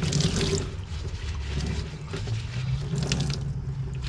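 Tap water running and splashing into a plastic utility sink as a foam air filter is squeezed and rinsed under it, washing soap and petroleum solvent out of the foam. The splashing comes and goes unevenly as the filter is worked.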